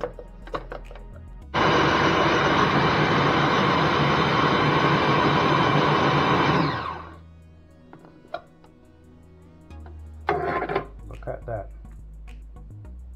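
Food processor motor running steadily for about five seconds, grinding almonds into smooth almond butter, then switched off and spinning down over about a second. Near the end there is a short plastic clatter as the lid is taken off the bowl.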